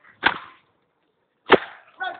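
A penitent's whip lashing a back: two sharp strokes about a second and a quarter apart.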